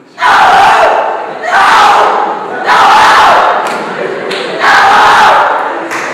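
A man shouting four loud cries, each about a second long, with short gaps between them.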